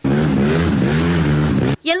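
Modified motorcycle engines revving hard, their pitch wavering up and down over a dense hiss; the sound cuts in and out abruptly, lasting under two seconds.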